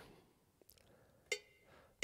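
Sampled cowbell from GarageBand's Latin percussion kit, struck once a little over a second in, a short metallic ring, with the next identical strike just beginning at the very end.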